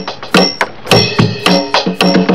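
Electronic drum kit played in a funk groove: a quick run of sampled drum and cymbal hits.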